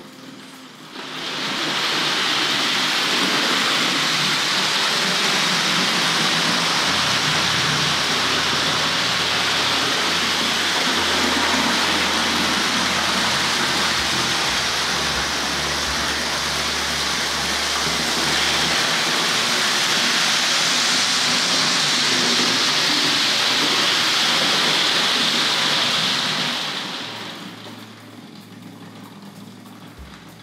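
Tri-ang R.350 Mallard 00-gauge model locomotive running fast with its coaches: a steady rushing noise of motor and wheels on the rails. It builds up about a second in and dies away a few seconds before the end as the power drops off toward a crawl.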